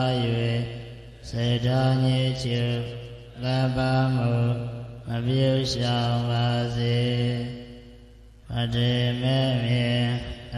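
A Buddhist monk chanting into a microphone in a steady monotone, in long held phrases broken by short pauses for breath.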